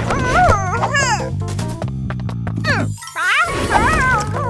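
Cartoon background music with a steady low bass line, over quick wordless cartoon-character vocal noises that swoop up and down in pitch. The music cuts out briefly about three seconds in, then comes back.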